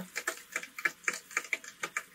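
A rapid run of irregular short clicks, several a second.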